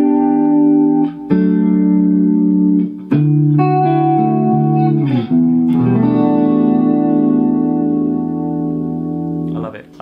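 Clean electric guitar playing a slow run of held chords through an analog chorus pedal turned up for a more pronounced warble. The chords change every one to three seconds and the last one is cut off just before the end.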